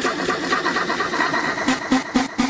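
Gqom DJ mix in a transition: a dense, hissing build-up with a steady high tone replaces the previous track. Evenly repeating beats start near the end.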